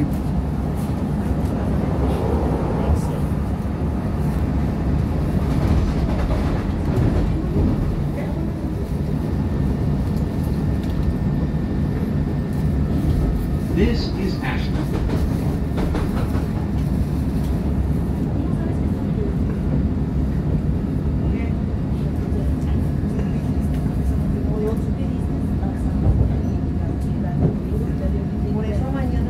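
Steady rumble of a moving CTA 2600-series rapid-transit car, heard from inside the car: wheels on the rails and motor hum, with a few sharp clicks about halfway through and near the end.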